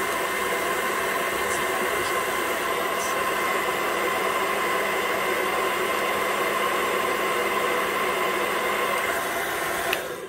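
Remington hand-held hair dryer running on its low heat setting: a steady rush of air with a faint steady whine from the motor and fan. It cuts off at the very end.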